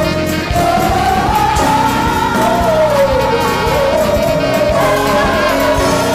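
Gospel choir singing with a live band behind it, a voice line rising and falling over a steady beat.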